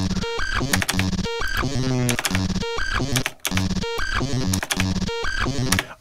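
A man's voice recording time-stretched to extreme length, so that a millisecond of the original lasts about a second, then pushed through OTT multiband compression and wave-shaper distortion. It plays back as a gritty, buzzy electronic bass drone with stepped tones, broken by brief dropouts about every second and a quarter.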